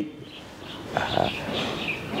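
Small birds chirping faintly and high-pitched in the background, with a short, louder low sound about a second in.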